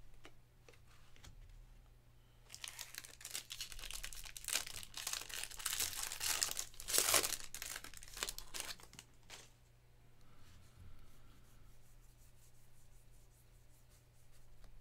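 The foil wrapper of a 2024 Bowman baseball jumbo pack being torn open and crinkled by hand. It starts about two and a half seconds in and is loudest near seven seconds. Near the end there is softer rustling as the cards are handled.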